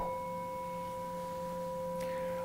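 Singing bowl struck once with a wooden mallet, then ringing steadily with a few clear overtones. It marks the end of a one-minute breathing meditation.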